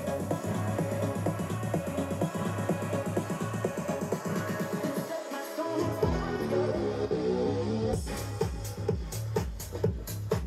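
Electronic house track played at half volume through a JBL Xtreme 3 Bluetooth speaker and heard in the room, with a steady beat and heavy bass. About halfway through, the bass drops out for about a second and comes back with the kick, and crisp hi-hats come in near the end.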